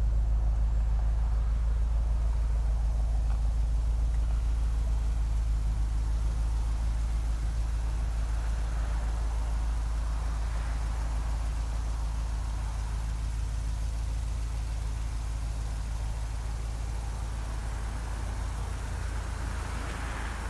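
The 2006 Jeep Grand Cherokee SRT8's 6.1 Hemi V8 idling with a steady low rumble that slowly grows fainter.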